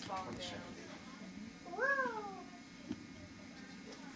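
A newborn baby's single short cry, rising then falling in pitch, about two seconds in.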